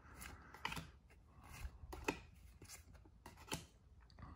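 Faint soft swishes and ticks of Pokémon trading cards sliding against each other as a stack is flipped through by hand, about half a dozen separate strokes.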